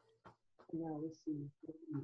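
A second, quieter and more distant voice repeating a short spoken phrase in three quick segments, starting a little over half a second in.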